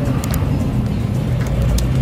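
A steady low motor rumble runs under background music.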